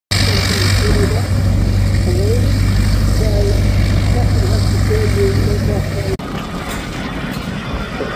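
Piston engines of a large twin-engined aircraft running steadily on the runway, a loud low drone, with a voice talking over it. About six seconds in the sound cuts off abruptly to a quieter, different engine sound.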